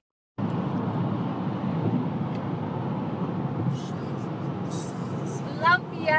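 Steady road and engine noise of a moving car heard inside the cabin, after a brief dropout of all sound at the very start. A woman's voice starts near the end.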